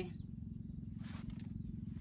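A motorcycle engine idling with a low, even, fast pulse. About a second in there is a brief faint rustle.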